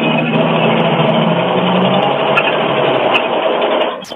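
City bus interior noise picked up by a rider's phone microphone on a video call: steady engine and road rumble with a low hum that fades about two to three seconds in. It sounds loud and thin through the call audio.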